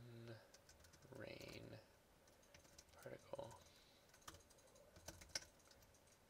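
Faint clicking from a computer mouse and keyboard during a screen recording, with a few separate sharp clicks in the second half.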